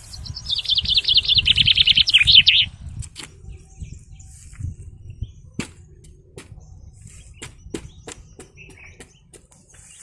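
A bird calling: a rapid run of high chattering notes lasting about two seconds, the loudest sound here. After it come scattered light clicks and taps.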